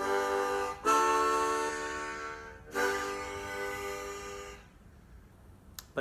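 A plastic-bodied Hohner Blue Ice harmonica in G major with metal reeds, played as three held chords: a short first one, then two of about two seconds each, stopping about a second and a half before the end. The plastic body gives it a tone the player calls a little bit duller.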